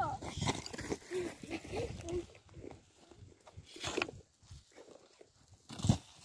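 Shovel blade striking stony earth twice, about four seconds in and again just before the end, the second strike loudest. Short high-pitched vocal sounds come in the first couple of seconds.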